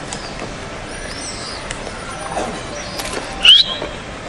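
Open-air ambience with birds chirping: a few faint high chirps about a second in, then one loud, sharp chirp near the end.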